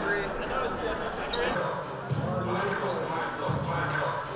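Voices and chatter echoing in a large gymnasium during volleyball play, with a ball bouncing on the court.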